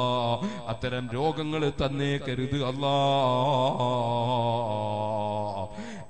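A man's voice chanting in a melodic, sung intonation, with short rising and falling phrases and then one long held, quavering note from about three seconds in until just before the end.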